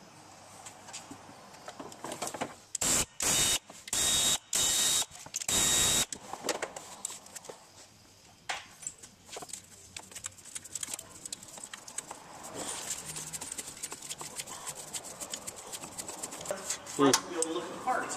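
A power tool runs in five short, loud bursts about three to six seconds in as the water pump bolts are spun out. Scattered light metal clicks and clinks of loose bolts and tools follow.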